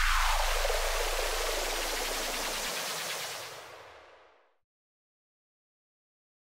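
Closing effect of an EDM remix: a white-noise sweep falling steadily in pitch over a low bass tone. The bass cuts off about two and a half seconds in, and the noise fades out completely by about four and a half seconds in.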